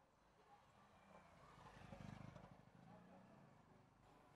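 Near silence, with a faint low sound swelling up and fading away around the middle.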